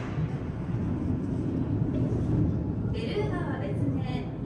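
Indistinct chatter of many people over a steady low rumble of hall noise, with one voice rising more clearly about three seconds in.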